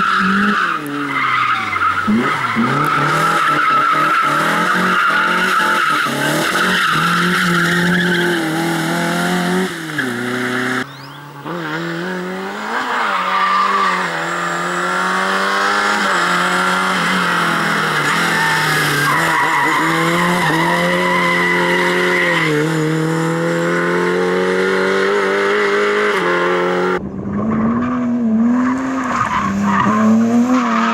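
Rally cars driven hard one after another, among them Lada 2101 and 2107 saloons: four-cylinder engines revving high, the pitch rising and falling as they shift gear and lift off, with tyres sliding on a loose surface. The sound cuts abruptly to another car about a third of the way in and again near the end.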